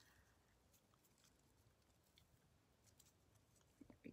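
Near silence, with a few faint soft ticks from satin ribbon being handled while a bow is tied.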